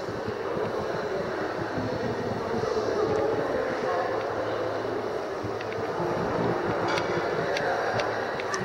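Steady background noise of a large hotel lobby, with faint distant voices, and a few light clicks near the end.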